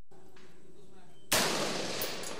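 A single sharp gunshot about a second and a half in, followed by a noisy tail that fades, with a few small clicks after it.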